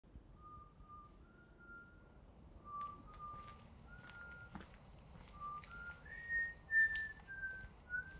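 Someone whistling a slow tune: a dozen or so clear held notes that step up and down, climbing to the highest notes about six seconds in. A thin, steady high-pitched tone runs faintly underneath.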